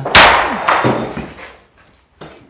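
A sudden loud bang just after the start, with a second knock about half a second later, ringing out in a bare room and dying away over about a second.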